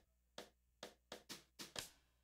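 Drum beat opening a recorded classroom vocabulary chant from a coursebook audio track, played faintly over the room's speakers: a sharp hit about every half second, coming quicker near the end.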